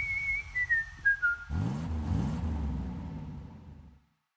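End-of-video sound sting: a whistle-like tone held high, then stepping down in pitch. About a second and a half in it gives way to a few low rising sweeps like an engine revving, which fade out.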